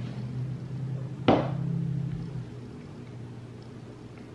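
A single sharp knock just over a second in, with a short ring after it: a glass soda bottle set down on a wooden table.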